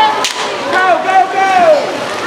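People shouting across the pool during a youth water polo game, in drawn-out, rising and falling calls, with a single sharp crack just after the start.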